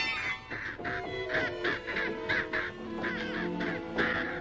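Orchestral film score with crows cawing over it, a quick run of short harsh calls about three a second.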